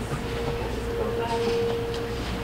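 A faint voice speaking away from the microphone in a room, over a steady hum.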